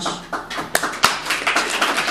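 Audience applauding: many hands clapping in a dense, steady run.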